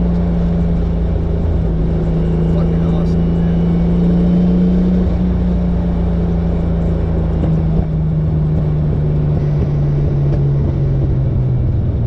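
Turbocharged 2JZ-GTE straight-six of a 1996 Lexus SC300, heard from inside the cabin, running at steady cruising revs. About halfway through, the engine note starts to fall slowly as the revs drop off.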